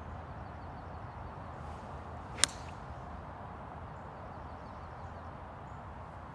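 Golf iron striking a ball off the turf: a single sharp, crisp click with a short ring, about two and a half seconds in.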